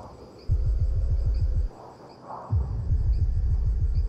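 Dramatic TV underscore: a rapid low bass pulsing in two stretches, dropping away for about a second in the middle, over a faint high chirping.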